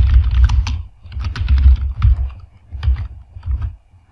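Typing on a computer keyboard: runs of quick keystrokes, each with a low thud, broken by short pauses and stopping just before the end.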